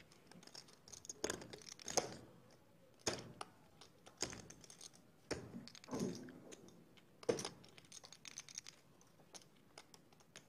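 Clay poker chips clicking together in irregular little runs, about one every second, as a player fiddles with his chip stack on the felt while thinking over a bet.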